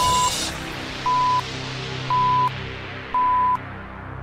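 Four short electronic beeps at one pitch, about a second apart: a countdown pip signal over a steady music bed, with a noisy swell fading out in the first half-second.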